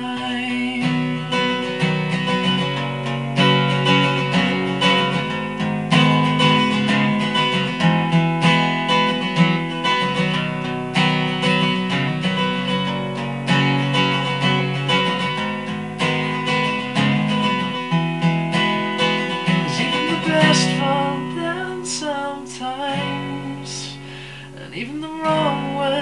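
Acoustic guitar strumming chords in an instrumental break, with no singing over it. The playing eases off and gets quieter a few seconds before the end, where the voice comes back in.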